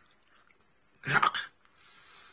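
A short, loud vocal outburst from a man about a second in, half a second long, made of several quick pulses.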